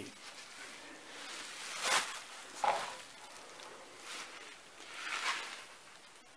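Handling noise from a removed outboard-motor hood being turned over in the hands: a few light knocks and rustles, with the sharpest tap about two seconds in.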